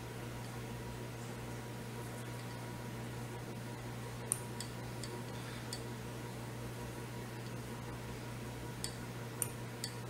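Steady low electrical hum of room tone, with a few faint small clicks from hand-wrapping a wire-cored Foxy Brush onto a hook held in a fly-tying vise. The clicks come in two small clusters, about four to six seconds in and again near the end.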